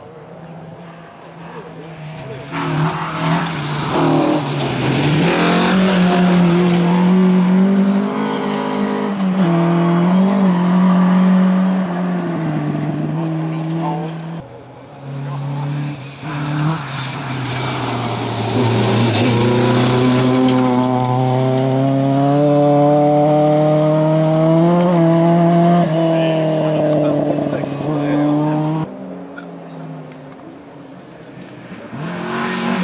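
A rally car's engine revving hard as the car comes up the stage. It eases off briefly about halfway through, then pulls again with the pitch climbing through the gears. The sound drops away suddenly near the end.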